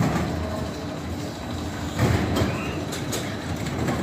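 Steel spinning mouse roller coaster car rolling along its track: a steady rumble of wheels on the rails, with a few short clicks about halfway through.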